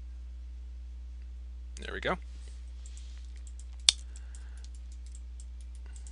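Computer mouse and keyboard clicking: a string of light clicks with one sharp, louder click near the middle, over a steady low hum.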